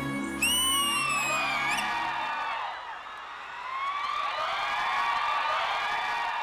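The dance song's music ends over the first two seconds, with a high gliding tone sweeping down and then sharply up. A studio audience then cheers and whoops, many overlapping voices, with a lull in the middle.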